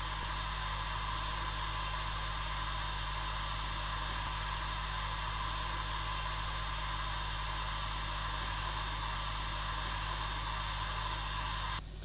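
Steady electrical or mechanical hum with hiss, unchanging throughout, holding a fixed set of tones from low to high; it drops off just before the end.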